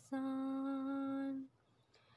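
Background song: a high singing voice holds one long, steady note, which breaks off about one and a half seconds in.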